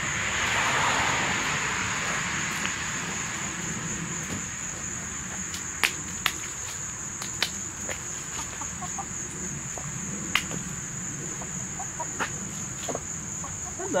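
Hens pecking at pieces of yellow jacket nest comb on asphalt: a few sharp beak taps and soft clucking. A steady high-pitched trill of crickets runs underneath.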